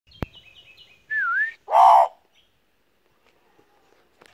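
Australian magpie calling: a quick run of short high chirps, then a clear whistled note that dips and rises, then a louder, rougher call. A sharp click comes right at the start.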